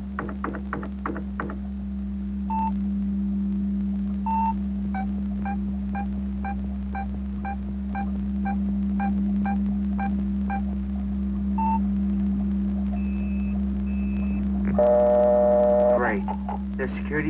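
Computer beeping as a password-cracking program runs: a couple of single beeps, then a steady run of beeps about two a second, over a low steady hum. Two higher tones follow, then a loud buzz about a second before the end, the sign of the remote system disconnecting at a wrong password.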